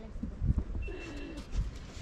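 Birds calling: a low, curving call about half a second in, then a thin, steady high whistle lasting about half a second.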